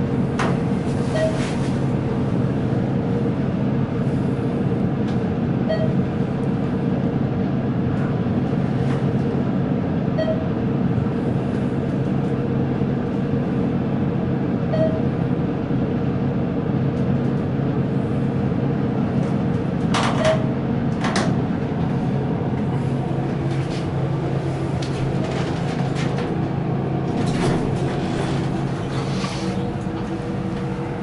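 ThyssenKrupp hydraulic (oildraulic) passenger elevator riding up: a steady mechanical hum from the running pump unit, with a faint short tone every four to five seconds in the first half and a couple of sharp clicks about twenty seconds in.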